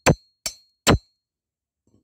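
Three sharp metallic clanks, about half a second apart, the first ringing briefly, as a steel rod is knocked against a stuck valve in a small motorcycle cylinder head. The valve is held open, which the mechanic puts down to rust from the bike standing unused a long time.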